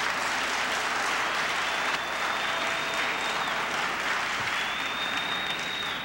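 Audience applauding, a steady, dense clapping that holds at an even level for several seconds.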